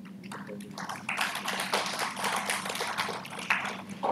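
Audience applauding: scattered clapping that swells about a second in and dies away near the end, over a steady low hum in the hall.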